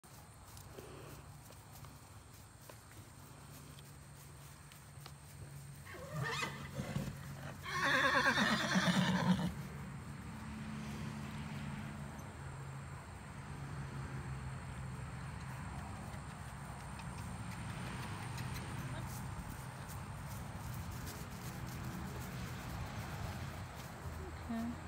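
A horse whinnies loudly once, about eight seconds in, for under two seconds, with a shorter, fainter call just before it.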